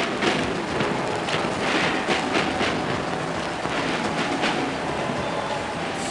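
Marching snare drums played by a drum corps in a dense, rattling roll with irregular accents, under a steady hiss.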